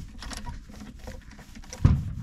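Faint small clicks and scraping of a spark plug socket and extension turned by hand, winding a new spark plug down into its plug hole, with a single thump near the end.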